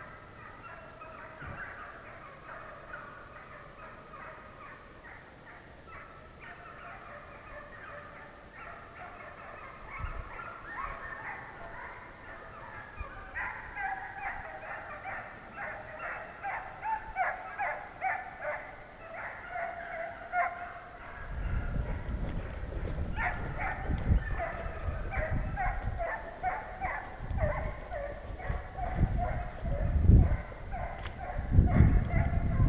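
A pack of deer hounds baying in a continuous chorus of short yelps and bawls, faint at first and growing louder from about halfway in. From about two-thirds of the way in, a low rumbling noise on the microphone joins them.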